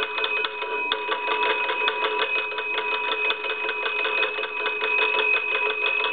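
The twin brass gongs of a Monarch wooden wall crank telephone ringing as its hand crank is turned: the clapper strikes rapidly and evenly while the bells' tones ring on steadily. This is the ringer working in a final checkout after repair.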